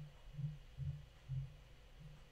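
Four soft, muffled low thuds, roughly evenly spaced: keys being pressed on a laptop keyboard as text in the code is selected and edited.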